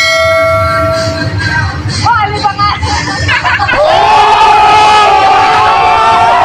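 A group of young men shouting and whooping together in excitement, several voices held in one long shout from about four seconds in. It is preceded by a steady held tone lasting about a second at the start.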